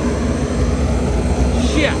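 Liquid-fuel (waste-oil) radiant tube burner firing with its combustion-air blower: a loud, steady, low-pitched rush of flame and air through the steel tube, with a faint steady whine over it. The fuel pressure is a little too high for the small tube.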